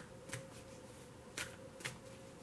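Tarot cards being handled: a few short, soft card flicks and slides off a hand-held deck.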